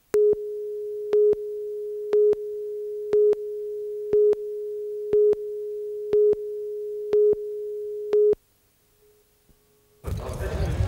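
Broadcast videotape countdown leader: a steady electronic tone with a louder, sharper beep once a second, nine beeps in all, cutting off suddenly about eight and a half seconds in.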